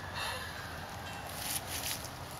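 Quiet background noise with a couple of faint, brief rustles.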